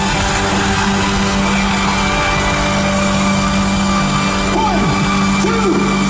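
Live rock band on stage holding a sustained, droning chord with a steady low note, with sliding pitch bends coming in from about four and a half seconds in, heard from the audience.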